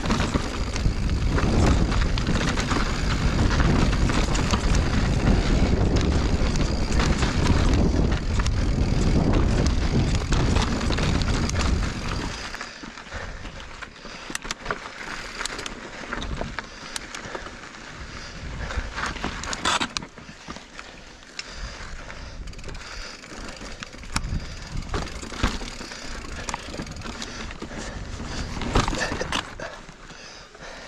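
A 29-inch full-suspension mountain bike ridden along a dirt trail. For roughly the first twelve seconds there is a loud, steady rush of tyre and riding noise. After that it drops to a quieter ride broken by scattered clicks, knocks and rattles as the bike crosses rougher, rockier ground.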